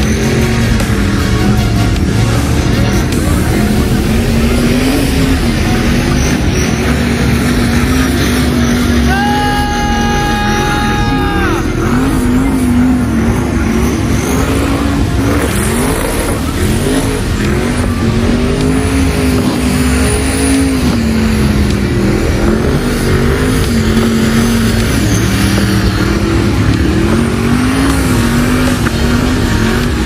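Twin-turbo LS V8 in a BMW 3-series burnout car held at high revs through a burnout, the engine note wavering up and down as the throttle is worked, with the rear tires spinning. A steady horn-like tone sounds for a couple of seconds about a third of the way in.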